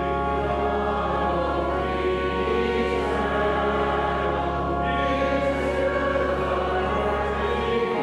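Church organ playing a hymn in sustained chords over a held low pedal note, with a congregation singing along. The bass note drops out just before the end as the chord changes.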